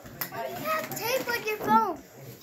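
Young children's voices: high-pitched wordless vocalizing whose pitch rises and falls, the sound of small children at play.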